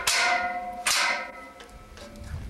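Two sharp strikes about a second apart, each ringing on with a few steady tones that fade away over most of a second.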